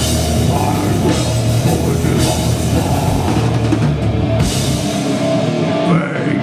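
Heavy metal band playing live, with distorted electric guitar, bass guitar and a drum kit with repeated cymbal crashes, in an instrumental passage without singing. The deepest bass drops out about five seconds in.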